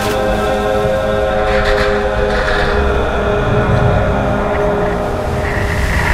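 Film soundtrack music with sustained, held chords, and a brief rush of noise about a second and a half in.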